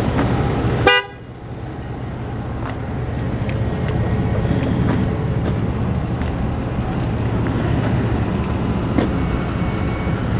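Pickup truck engine idling steadily. About a second in, a single short horn toot cuts across it.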